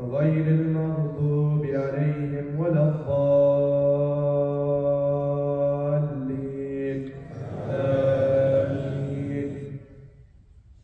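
An imam's voice reciting the Quran aloud in a melodic chant while leading the prayer, drawing out long held notes. The longest note is held for about three seconds, and the last phrase stops just before the end.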